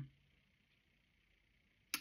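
Near silence: faint room tone between sentences, ended by a single short click just before speech resumes.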